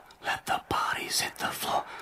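A rhythmic whispered voice, the opening of a backing song.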